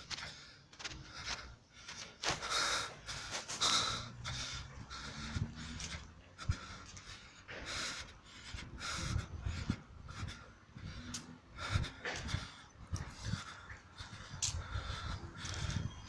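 A person panting hard in irregular breaths, out of breath from climbing a hill path on foot.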